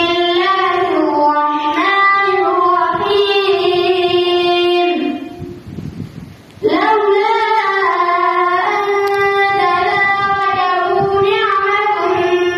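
A boy reciting the Quran in a long, melodic chant into a handheld microphone, holding and bending each note. He stops for a breath about five seconds in, then starts the next phrase.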